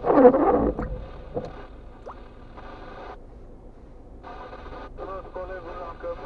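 A voice heard through a phone or car speaker, thin and cut off in the highs, speaking in short stretches, with a loud rushing burst in the first second.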